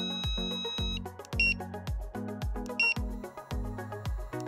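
Background music with a steady beat. Over it the Unication Alpha Elite pager plays alert-tone previews: a held high multi-note tone in the first second, then two short high beeps about a second and a half apart.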